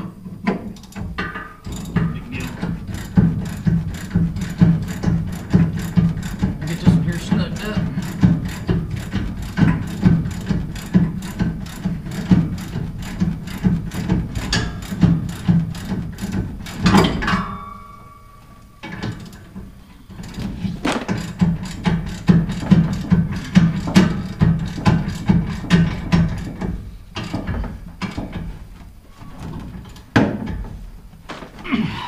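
Hand ratchet wrench clicking in quick, steady back-and-forth strokes as a bolt on a Ford F250 Super Duty's rear leaf spring mounting is turned, with a pause of a few seconds past the middle before the ratcheting resumes.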